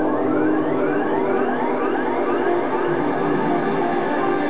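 Live electronic music from stage synthesizers: sustained chords held under several overlapping rising sweeps in pitch.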